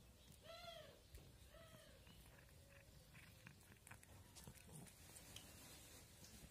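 Cat meowing twice, quietly: a short rising-then-falling meow about half a second in and a fainter one a second later, followed by a few faint clicks while the cat eats.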